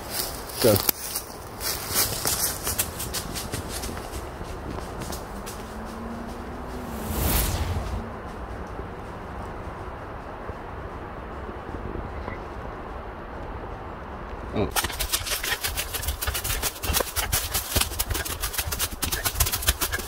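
Hurried footsteps crunching and rustling through dry leaf litter and brush as someone runs through the woods. The rapid crunching is dense for the first few seconds, drops to a quieter stretch in the middle, and comes back thick for the last five seconds.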